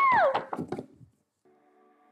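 A high-pitched squeal, likely a person's voice, that drops in pitch and cuts off about a third of a second in, followed by faint background music notes in a near-quiet room.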